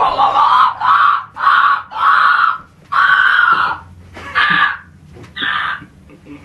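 A young man letting out a series of loud, shrill laughing shrieks, about one a second, the last few weaker.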